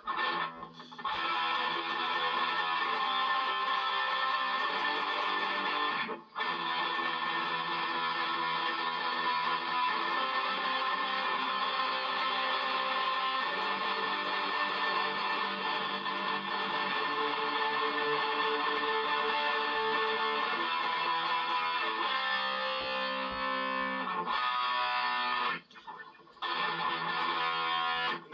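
Distorted Les Paul-style electric guitar, fast-picked chords played continuously in steady picking patterns. The playing stops briefly about six seconds in and again near the end.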